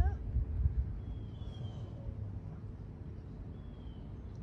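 Quiet outdoor ambience: a low rumble, loudest in the first second, with two faint, thin, slightly falling bird chirps, one about a second and a half in and one near the end.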